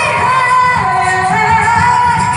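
Female pop vocals holding a long sung note that slides and steps between pitches, over a loud pop backing track with a steady beat, in a large hall.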